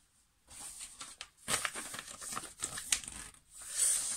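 Paper packaging crinkling and rustling as it is handled, with a few sharper crackles; loudest near the end.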